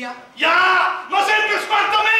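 Loud yelling voices on a stage, beginning suddenly about half a second in after a quieter moment and running on without a break.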